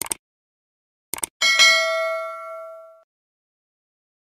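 Mouse-click sound effects: a quick double click, then another double click about a second in. These are followed at once by a bright notification-bell ding that rings on and fades out over about a second and a half.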